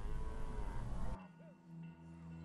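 Zebu cattle mooing: one drawn-out call over the steady low rumble of the herd, cut off suddenly about a second in.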